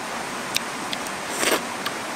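A person eating a grilled crab: a few sharp clicks and a short crunch about one and a half seconds in, over the steady rush of a flowing stream.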